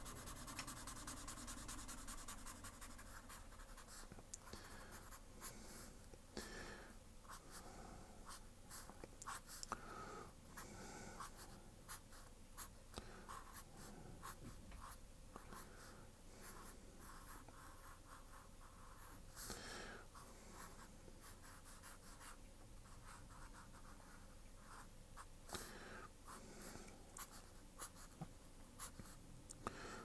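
Fineliner pen drawing on paper: faint, short strokes of the tip across the sheet, coming in quick runs with brief pauses between them.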